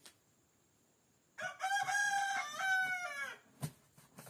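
A rooster crowing once, a single call of about two seconds starting about a second and a half in, held and then dropping in pitch at the end.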